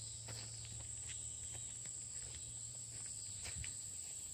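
Faint steady high-pitched insect chorus, with soft footsteps through grass.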